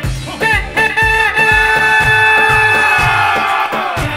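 Live Arabic dabke music from a keyboard-led band: a steady low drum beat under a melody that glides, then holds one long note from about a second in until near the end.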